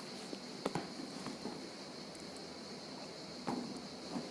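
A few short knocks and scrapes of a phone being handled and set down on a mesh table, over a faint steady background.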